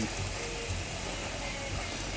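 Kitchen tap running into a stainless steel pot, the stream splashing steadily into the water already in the pot as it fills.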